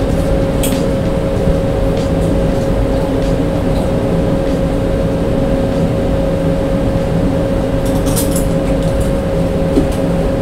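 Steady mechanical hum in the room, low and even with a constant mid-pitched tone, and a few light clicks about half a second in and again around eight seconds.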